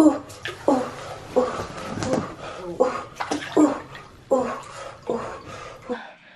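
Water sloshing and splashing in an inflatable birth pool as a person climbs in, in a series of short, irregular splashes.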